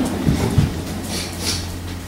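Steady low electrical hum and room noise, with two soft low thumps about a third and about half a second in.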